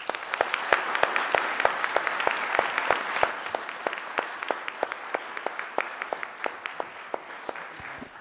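An audience applauding after a talk, many hands clapping at once; it starts suddenly, is fullest in the first few seconds, then thins out and fades away near the end.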